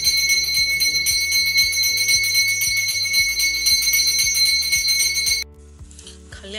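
Brass pooja hand bell rung rapidly and continuously during worship at the shrine, a high, shimmering ring over a low regular beat. It cuts off suddenly about five and a half seconds in.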